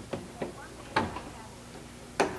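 Car door handle and latch clicking as the door is unlatched and opened: a few short, sharp clicks, the loudest about a second in. The latch releases more easily after a striker adjustment.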